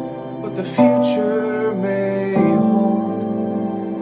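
A man singing a slow, tender ballad over held accompaniment chords, the harmony changing about a second in and again a little past the middle.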